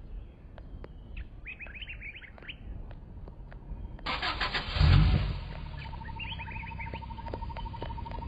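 Birds chirping, then about four seconds in the open jeep being pushed gives a loud low rumble that peaks near five seconds, followed by a steady pulsing hum.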